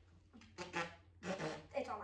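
A girl talking in three short bursts, the words unclear.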